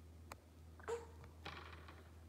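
Infant cooing softly: one short coo about a second in and a fainter breathy sound just after, over a faint steady low hum.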